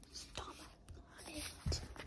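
Cardboard puzzle pieces being handled on a card board: soft rustling and light taps, with a dull thump near the end.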